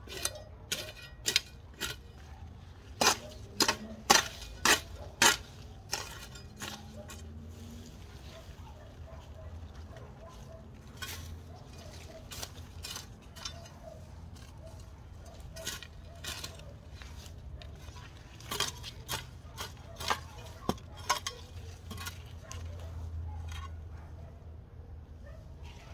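Steel hoe blade chopping into soil and weeds: sharp strikes in bursts, the loudest a run of about five blows half a second apart a few seconds in, with further runs later.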